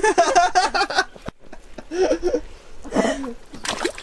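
Speech: voices talking in short phrases, cut off abruptly about a second in, then resuming in brief snatches.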